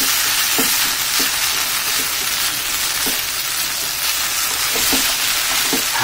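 Stir-fried noodles and raw egg sizzling in an oiled frying pan while being stirred and mashed together with wooden chopsticks. It is a steady hiss with a few light knocks of the chopsticks against the pan.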